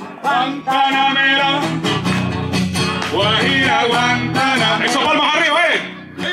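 Acoustic guitar strummed in a steady rhythm, with a man's voice singing over it.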